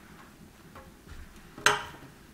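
Faint handling of fabric and scissors on a marble tabletop, then one sharp click of the scissors near the end.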